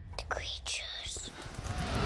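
Whispering voices with no clear words, hissing and rising and falling in pitch, over a low rumble.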